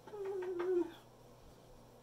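A domestic cat's single short meow, falling in pitch and lasting under a second.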